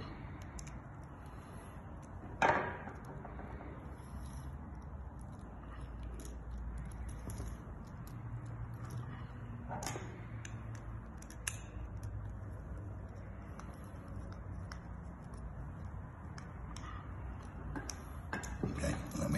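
Quiet handling sounds of a screwdriver and a 16 amp industrial plug being worked: faint clicks and scrapes over a low steady room hum, with a sharper knock about two and a half seconds in, another around ten seconds in, and a small click shortly after.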